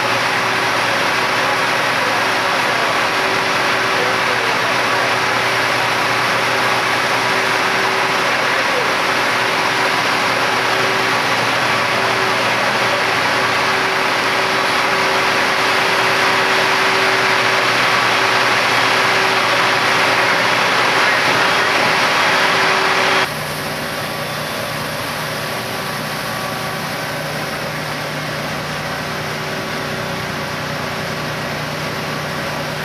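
Fire engines running steadily: a constant engine hum over a dense rushing noise. About 23 seconds in, the sound cuts off abruptly to a quieter, lower engine hum.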